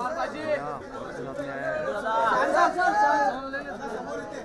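Chatter of several voices talking over one another.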